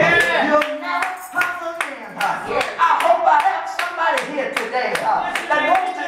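A man's preaching voice over steady rhythmic hand clapping, about three claps a second.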